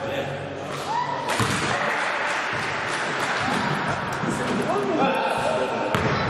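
Indoor basketball play in a reverberant gym: a hard ball impact about a second and a half in, a couple of short sneaker squeaks on the court floor, and players' voices.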